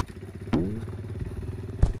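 Motorcycle engine running, revving up about half a second in and then holding a steady pitch.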